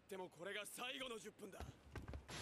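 Faint male voice speaking the anime's dialogue, with a low rumble coming in near the end.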